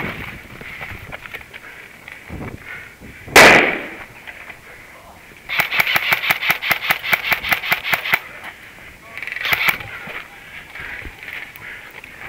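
Airsoft rifle firing a rapid string of about twenty shots, roughly seven a second, for nearly three seconds in the middle. A single loud bang comes a couple of seconds before the string, and a short burst follows it.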